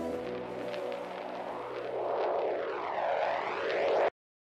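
Electronic transition effect in a music mix: sustained synth pad tones fade under a swelling whooshing noise riser, whose sweeps swirl down and back up as it builds louder. It cuts off abruptly at the end.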